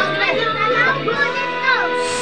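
Children's and adults' voices talking over background music; the music's steady tones come through more clearly after about a second.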